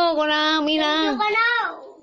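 A high voice singing one long held note, steady in pitch, that falls away and fades out near the end.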